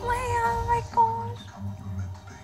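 A woman's high-pitched whimpering: a drawn-out whine, then a shorter one about a second in.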